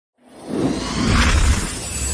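Logo-reveal intro sting: a whoosh that swells up out of silence, with a deep rumble beneath and a high shimmer on top, loudest about a second and a half in before it begins to fade.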